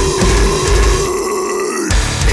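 Metalcore band playing, with a harsh, growled vocal held over the guitars, drums and synth. About halfway through, the drums and bass drop out for a moment, leaving the held note alone, and the full band comes back in near the end.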